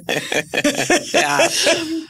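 Women laughing in short, breathy, choppy bursts, with bits of speech mixed in.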